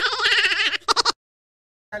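A man's voice stuttering through a garbled, quavering run of syllables, breaking into a rapid flutter of repeats near one second in, then cutting off abruptly to dead silence.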